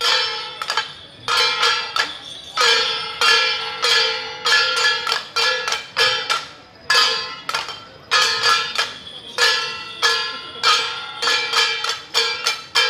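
Temple-procession metal percussion accompanying a Jiajiang troupe's dance: gongs and cymbals struck again and again in a quick, uneven rhythm of several strikes a second. Each strike is a bright clang with a ringing tone that hangs on between hits.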